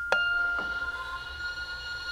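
Metal percussion struck twice, about half a second apart, then ringing on with several steady high pitches that overlap and hang in a long bell-like sustain.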